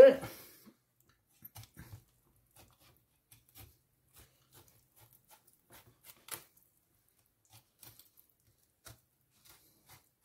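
Faint, scattered ticks and small clicks of a filleting knife working through raw flatfish flesh along the bones, with one louder tick about six seconds in.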